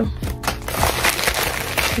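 Plastic padded bubble mailer crinkling and rustling as it is handled, with soft background music under it.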